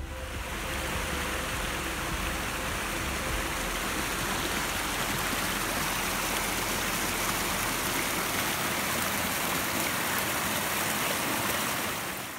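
A small stream running over rocks: a steady rush of water.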